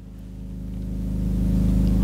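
A low, steady hum that grows steadily louder.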